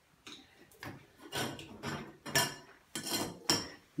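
Metal shower drain cover being worked loose and lifted out of the drain, clinking and scraping against the metal several times in an irregular series.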